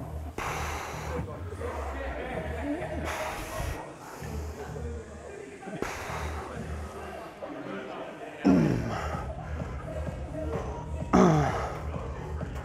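A man straining through leg extension reps: forceful breaths about every three seconds, then two loud groans falling in pitch in the last few seconds. Gym music with a steady beat plays underneath.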